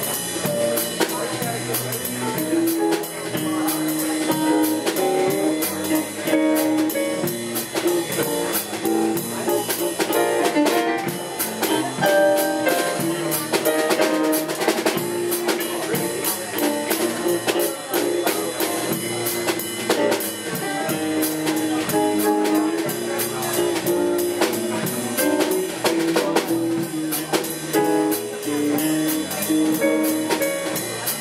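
Live band playing: a drum kit keeping a steady beat under guitars and an electric keyboard.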